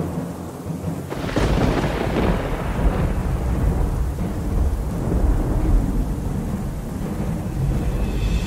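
A thunderclap breaks about a second in, then thunder rolls on as a low rumble under a steady hiss of rain.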